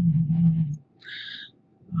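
A man's voice holding a low hum for under a second, then a short soft hiss.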